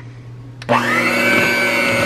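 Electric hand mixer switched on about two-thirds of a second in, its beaters running steadily at speed through thick cream cheese icing with an even motor whine.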